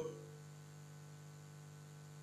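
Faint, steady low electrical hum, a single low tone with a fainter higher overtone, unchanging throughout.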